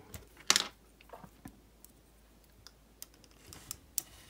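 Light clicks and taps of hard plastic action-figure parts being handled: a painted Transformers arm picked up off a table and set against the figure's torso. One sharper click comes about half a second in, then small scattered clicks.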